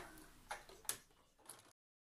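Four faint, sharp clicks and taps from hands handling fabric and parts at a sewing machine, with the machine not running; the sound cuts off abruptly near the end.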